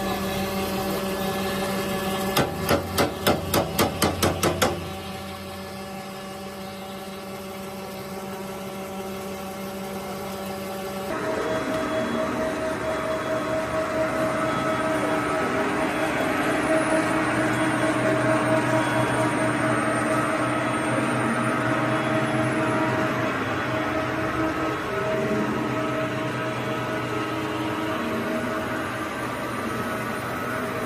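Plastic pelletizing extruder line running with a steady hum. A rapid run of about eight knocks comes a few seconds in. After about 11 s the running sound becomes louder and noisier, with a steady whine.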